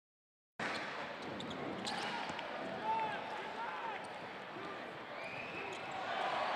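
Basketball being played on an indoor court: a ball bouncing and shoes squeaking on the hardwood over the murmur of an arena crowd.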